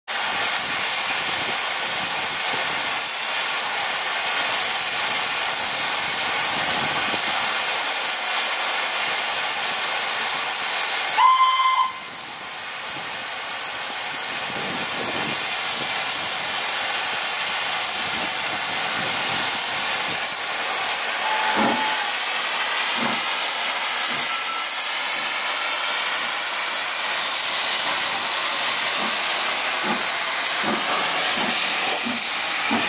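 Southern Railway S15 steam locomotive No. 847 hissing steam steadily, with one short blast of its whistle about eleven seconds in. The hiss drops for a moment after the whistle, then builds back up. A second, fainter short whistle comes about halfway through.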